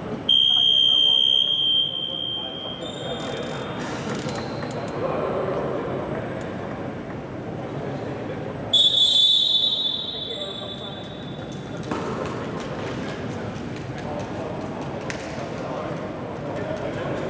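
Two long, loud, high-pitched signal blasts in a basketball hall, the first lasting about a second and a half just after the start, the second about a second long near the middle, over a background of players' voices and hall echo.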